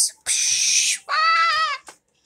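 A hissing 'shhh', then a high-pitched, slightly wavering squeal of under a second that sounds like a meow.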